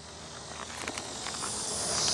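Honeybees buzzing around a frame held up out of an open hive, growing steadily louder, with a high steady hiss building up near the end and a few light clicks.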